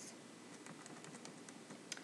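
Faint, scattered clicking at a computer over low room hiss, with one sharper click near the end.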